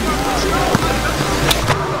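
A basketball bouncing twice on an outdoor asphalt court, the bounces about three-quarters of a second apart, over a background of voices.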